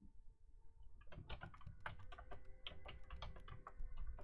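Computer keyboard typing: a quick run of keystrokes starting about a second in, as a terminal command is typed.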